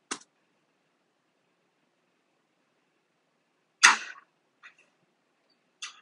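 A single sharp clap from a clapboard, the sync marker in the recording, played back over computer speakers, with a short decay; a faint click comes right at the start and a couple of faint ticks follow the clap.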